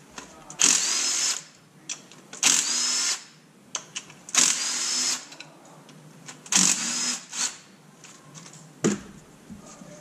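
Ryobi 18-volt cordless impact gun spinning LS1 valve cover bolts out, in four short runs about two seconds apart, each with a rising whine as the motor spins up. A single knock near the end as the tool is set down.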